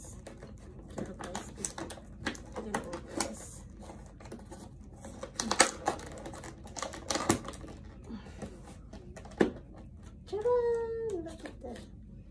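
Rigid clear plastic food clamshell crackling and clicking as it is handled and opened, in an irregular string of sharp clicks and crinkles. Near the end, a short pitched voice sound that rises and then falls.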